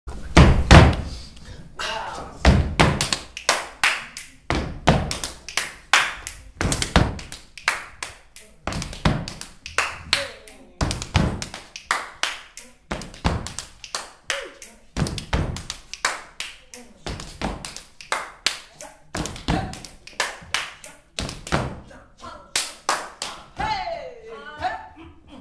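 Body percussion by a group on a hard floor: a heavy stomp about every two seconds with quicker claps and slaps in between, in a steady rhythm.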